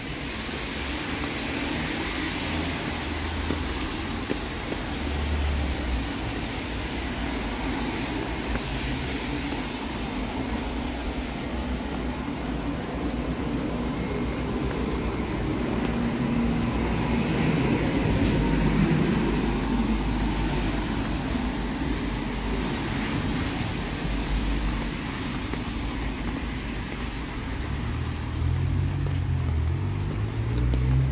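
Traffic on a rain-wet city street: a steady wash of cars driving past with tyre noise on the wet asphalt, swelling loudest as a car passes a little past halfway through.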